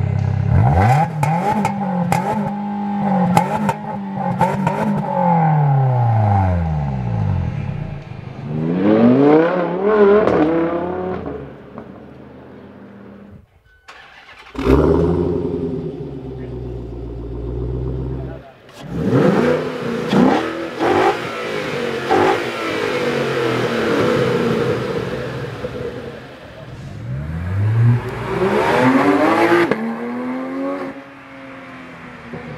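Car engines revved hard through their exhausts, the pitch sweeping up and falling back again and again. First comes a hatchback with a single centre exhaust, then after a short break a second car, and near the end a rising rev as a car accelerates away.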